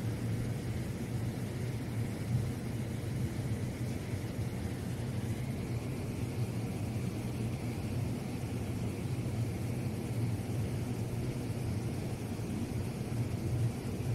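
A steady low rumble under a faint hiss, with no distinct events.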